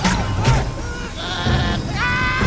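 Animated film soundtrack: music with wavering, bleat-like cries that dip and rise in pitch about twice a second.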